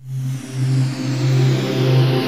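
Radio station imaging music for a break bumper, starting suddenly: a pulsing low bass with a falling whoosh sweep over it.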